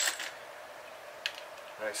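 Quiet room tone with a brief hiss at the start and a single small click past the middle, as a Saito 45S model four-stroke glow engine is turned over in the hands.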